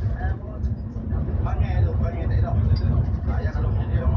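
Steady low engine and road rumble inside a moving bus, with people talking over it.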